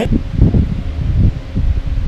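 Irregular low rumbling and rustling noise, like a handheld camera's microphone being handled or buffeted.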